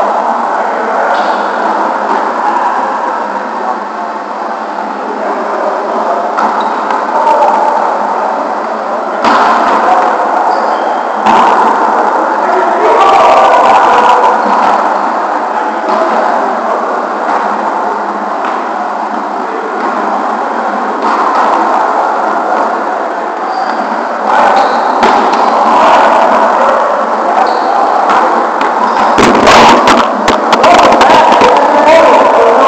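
Reverberant din of a busy gym hall, with indistinct voices and volleyballs being hit, and a few sharp knocks standing out. Near the end come a cluster of bumps as the camera is picked up and moved.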